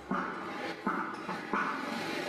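A dog barking three times, about once every three-quarters of a second.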